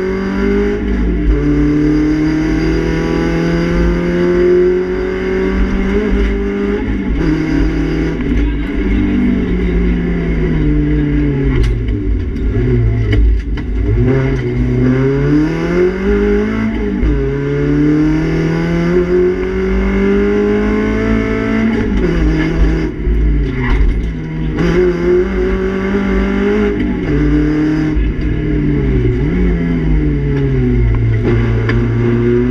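Renault Clio Sport rally car's four-cylinder engine, heard from inside the cabin at full stage pace. The revs climb and drop sharply over and over with quick gear changes. Near the middle the revs fall away for a few seconds before the engine pulls hard again.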